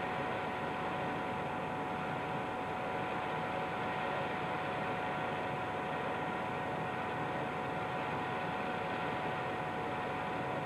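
Steady background hiss and hum with a few thin constant tones, unchanging throughout and with no speech or distinct events.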